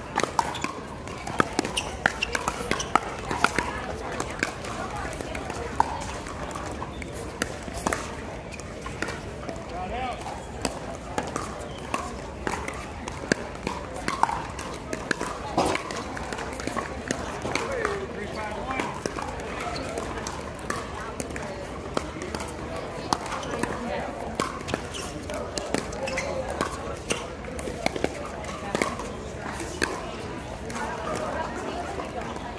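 Pickleball paddles striking the hollow plastic ball during rallies: sharp pops, often about two a second, over a background of voices chattering.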